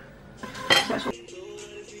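Pots, pans and kitchen utensils clattering in a short burst about half a second in while cooking pasta. Soft background music with held notes comes in about a second in.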